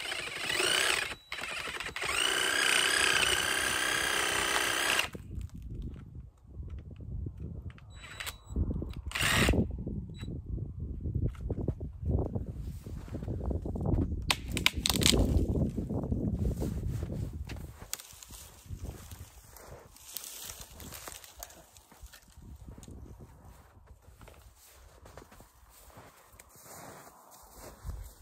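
Cordless power saw making a hinge cut in a tree branch: the motor runs steadily for about three seconds near the start, then irregular knocks and rustling as the partly cut branch is pulled down.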